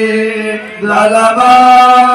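Hindu devotional chanting, a voice holding long sustained notes through a loudspeaker system, with a short break just before a second in.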